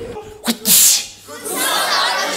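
A person's short, loud sneeze-like vocal burst, a quick voiced onset and then a hiss, about half a second in. From about a second and a half in, an audience cheers.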